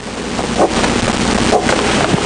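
Pen scratching across the writing surface as characters are written by hand: a steady, scratchy hiss with a few brief stroke marks.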